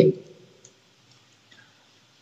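A man's voice trails off at the very start. Then it is nearly quiet, with a few faint, light clicks of computer input, stylus or mouse, at the screen being written on.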